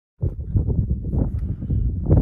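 Wind buffeting the microphone cuts in suddenly after a moment of silence: a loud, gusty low rumble.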